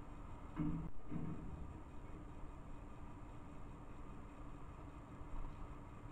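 Steady low background noise picked up by a trail camera's microphone, with a faint steady hum. A brief low double sound comes about half a second to a second in.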